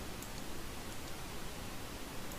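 Steady low hiss of background noise, with no distinct event.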